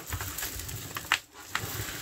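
Thick diamond painting canvas coated with poured glue being dragged backwards along a table edge to flatten its curl: a stiff rustling scrape with a few sharp crackles, the loudest about a second in.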